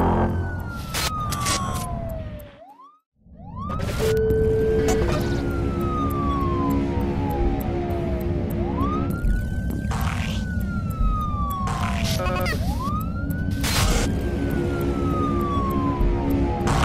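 A show's jingle: music with an emergency-vehicle siren sound effect wailing over it. Each wail rises quickly and falls slowly, repeating every few seconds, with sharp hits in between. The sound drops out briefly about three seconds in.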